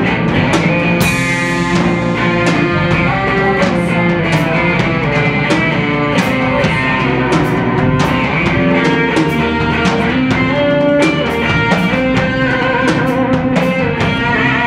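Live blues band playing an instrumental passage: electric guitar and electric bass over a Tama drum kit keeping a steady beat.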